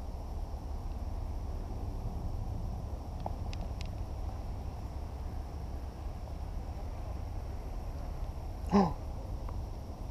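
Quiet outdoor background with a steady low rumble and faint hiss, and a couple of faint clicks. Near the end, a short voice-like call rises in pitch.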